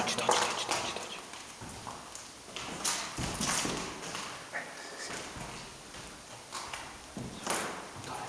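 Irregular footsteps and scuffs on a hard floor, coming in small clusters of steps.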